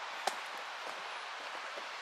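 Footsteps of walking boots on a tarmac lane, faint against a steady outdoor hiss, with one sharper click about a quarter of a second in.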